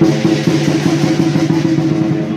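Hakka lion dance percussion: a drum beaten in a fast, continuous roll, with gongs and cymbals ringing over it.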